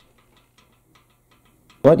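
Faint, irregular light clicks from a French horn's rotary valve and its metal lever being worked by hand. A man starts speaking near the end.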